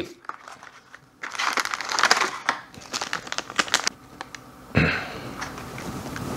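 Paper tea packet being handled and opened: a dense, crackly crinkling for a few seconds, followed by a brief thump about five seconds in.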